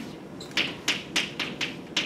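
Chalk writing on a chalkboard: a run of short, sharp taps and strokes as figures are written, starting about half a second in.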